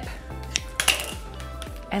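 Scissors snipping the corner off a plastic zipper bag, then clinking as they are set down on a marble countertop: two short sharp clicks about half a second apart, over soft background music.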